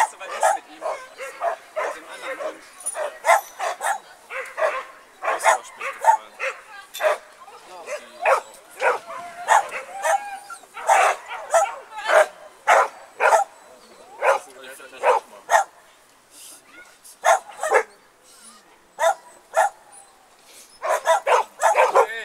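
A dog barking over and over in short, sharp barks while running an agility course. The barks thin out about two-thirds of the way through, then come in a quick flurry near the end.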